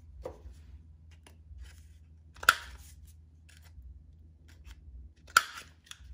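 A handheld corner-rounder punch snapping twice, about three seconds apart, as it cuts rounded corners into a strip of painted paper. Each cut is a single sharp click.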